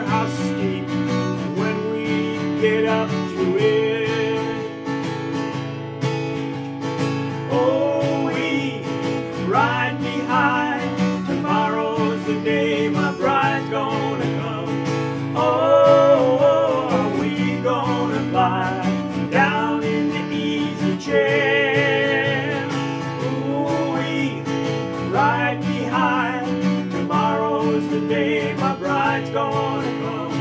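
Taylor PS10ce steel-string acoustic guitar strummed in a steady rhythm, with a man singing a country-folk song over it and holding some notes with vibrato.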